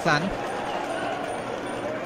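Steady murmur of a stadium crowd in the pause after the commentator's last word at the very start.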